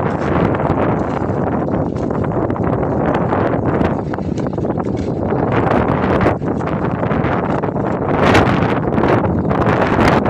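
Wind blowing across the microphone: a loud, steady rumble with gusts, the strongest about eight seconds in.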